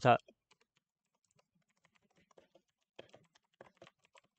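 Faint computer keyboard typing: scattered keystrokes, more of them in the last second or so.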